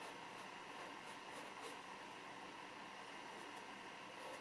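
Faint, irregular strokes of an oil-paint brush on canvas, soft brief scratches over a steady hiss.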